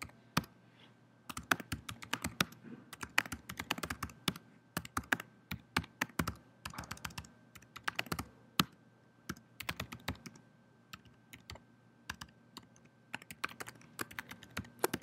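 Typing on a laptop keyboard: quick, irregular runs of keystrokes with short pauses, thinning out for a few seconds in the latter half before picking up again near the end.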